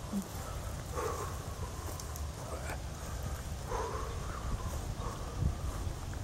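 Outdoor ambience with a steady low rumble and two faint, distant calls, one about a second in and one a little past the middle.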